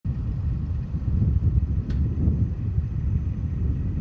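Steady low outdoor rumble, uneven in level, with one short high click about two seconds in.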